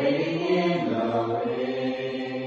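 Group of voices singing together in harmony, holding long sustained notes; a new phrase begins right at the start.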